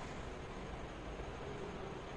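Steady background hiss of room noise with no distinct event.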